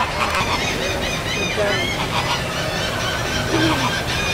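A flock of flamingos and gulls calling together: a continuous chorus of overlapping goose-like honks and short squawks from many birds at once.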